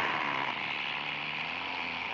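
Cartoon sound effect of steam spraying from a car's radiator cap: a long, steady hiss.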